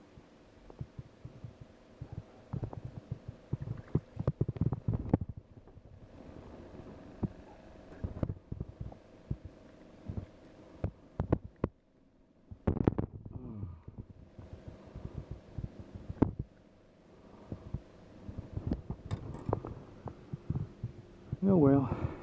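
Irregular low knocks and bumps of handling on a fishing boat as a small fish is landed and unhooked, over a faint steady hum. A man's voice comes in briefly near the end.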